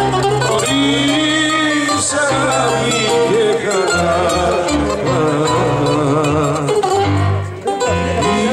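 Live Greek popular song: a bouzouki playing the melody over keyboard accompaniment with a steady bass line, and a man singing into a microphone. The music dips briefly near the end.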